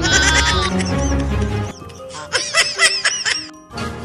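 Background music that cuts off suddenly less than two seconds in, followed by a short comic sound effect of rapid, high, warbling calls lasting about a second.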